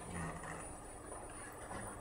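Quiet room tone with a steady faint high-pitched whine, and a faint low voice sound just after the start and again near the end.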